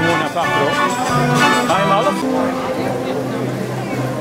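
Dutch street organ (draaiorgel) playing music, with people's voices over it. About two seconds in the organ music drops back, leaving voices more to the fore.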